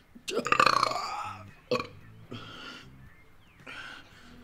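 A man belching: one long, rough belch about a third of a second in, a short one a little before the middle, then a few fainter ones.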